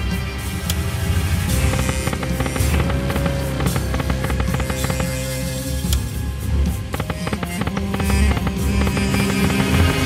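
Book of Ra Deluxe 10 video slot's game audio: looping music over reel-spin sound effects, dense with rapid clicks.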